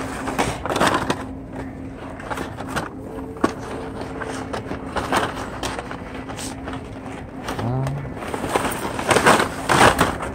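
Hot Wheels blister packs, plastic bubbles and cardboard cards, crinkling and clacking against each other as they are pushed aside and lifted on a crowded peg shelf. The handling comes in bursts and is loudest near the end, over a steady low hum.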